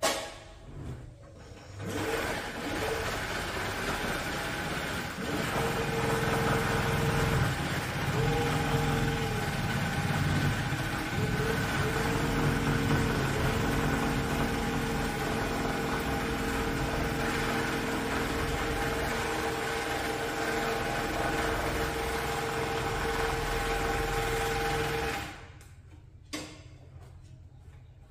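Carpet overlocking machine running as it stitches the cut edge of a carpet. It starts about two seconds in, runs steadily with a held tone that drops out briefly a few times, and stops shortly before the end.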